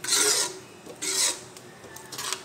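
Steel ladle scraping along the metal pot twice while stirring thick rice kheer: two short rasping strokes, the second about a second in.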